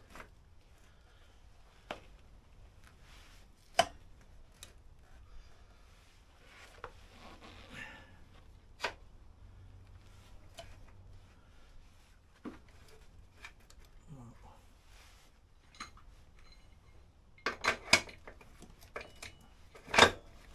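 Scattered sharp metallic clinks and knocks from handling a motorcycle rear wheel and its axle fittings while lining the wheel up to refit it. The loudest knock comes about four seconds in, and a quick run of several clinks comes near the end.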